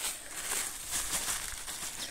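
A black plastic bag crinkling as coarse cracked corn is poured from it into a bucket, the grains rustling and hissing as they fall.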